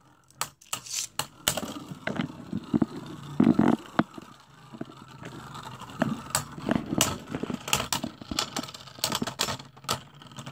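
Two Beyblade Burst spinning tops whirring on a plastic stadium floor, knocking into each other with many sharp clacks. Near the end one top runs down and stops.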